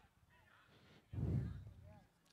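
Faint shouts from the field of play, then about a second in a single short, loud yell close to the microphone that fades away quickly.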